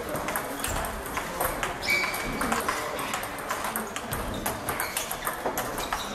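Table tennis balls clicking off bats and tables, many sharp taps in an irregular patter from several tables in play at once.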